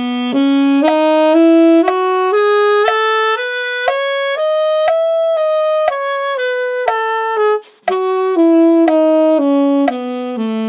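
Saxophone playing a concert E major scale in even eighth notes, two notes to each click of a metronome at 60 beats per minute. It climbs to the top note about five seconds in and then comes back down, with a brief gap for a breath a little before the end.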